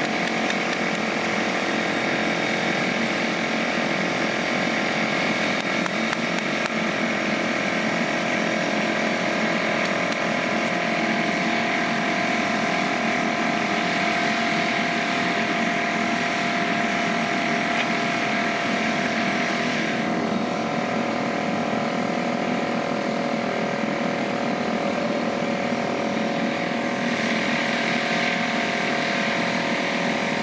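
Small engine running steadily, a continuous mechanical drone with a slight change in pitch about twenty seconds in.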